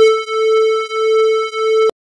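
A sustained synthesizer note, a steady buzzy tone around 450 Hz that swells and dips slowly in loudness, cut off abruptly near the end. It is played through a noise gate whose threshold the clean note exceeds, so it passes unchanged.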